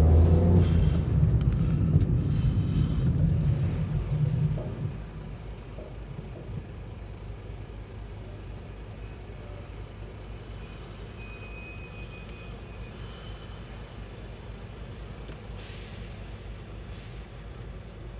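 In-cabin car noise: a loud low rumble of the car driving that drops off about five seconds in as the car comes to a stop in traffic, leaving a quiet steady engine hum. There is a short hiss near the end.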